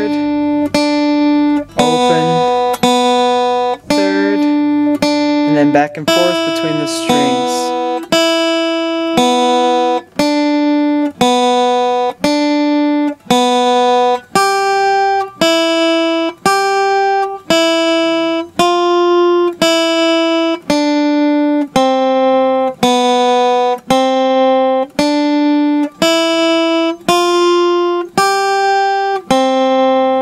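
Guitar playing a slow single-note tablature exercise on the top two strings: one plucked note at a time at an even pace, a little faster than one a second, moving between the open strings and the first and third frets.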